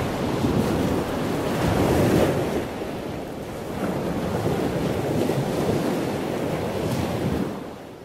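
Sea waves washing against the shore, with wind on the microphone. The sound swells and eases, then fades out near the end.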